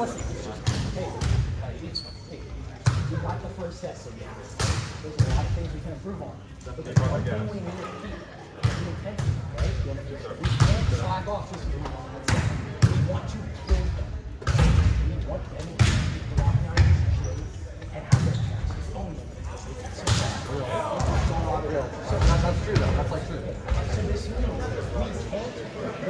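Balls being hit and bouncing on a gym floor, sharp thuds coming irregularly about once every second or two, under a murmur of voices.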